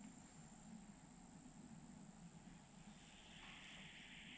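Near silence with a faint, steady, high-pitched insect trill, joined about three seconds in by a second, lower buzz.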